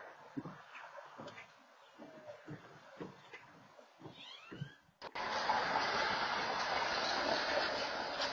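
Footsteps on a wooden deck, about two a second, with a bird chirping a few times around four seconds in. About five seconds in, a louder, steady hiss of outdoor background noise suddenly takes over, picked up by an outdoor security camera's microphone.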